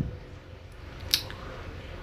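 A screwdriver tightening the needle bar clamp screw on a flatlock sewing machine, giving one short, sharp metallic scrape about a second in over a low steady room hum.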